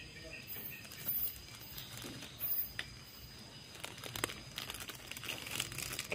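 Thin clear plastic bag crinkling and rustling as it is slipped over a fresh durian graft as a protective cover, mostly faint with a few short louder crinkles about one and two and a half seconds in.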